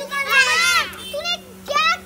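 A young child's high-pitched voice calling out in a long call that rises and falls in pitch, then a short second call near the end, over a steady low hum.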